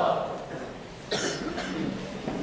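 The last held note of a boy's melodic Quran recitation dies away, then about a second in comes a short cough, with a smaller one just after.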